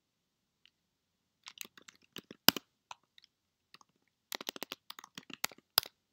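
Typing on a computer keyboard: irregular keystrokes starting about a second and a half in, sparse at first and then coming in a quicker run near the end.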